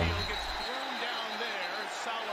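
Faint commentary from a televised NFL game: a man's voice rising and falling, with a low rumble in the first half second.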